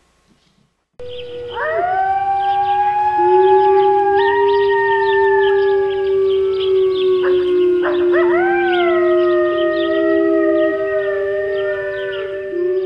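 Several canines howling together in a chorus, starting suddenly about a second in: overlapping howls at different pitches that rise, hold and slide down, with a fresh wave of rising howls about eight seconds in.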